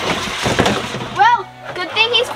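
Skeleton decoration sliding headfirst down a plastic tube slide, a rattling clatter of bones against the tube for about the first second, then a brief voice.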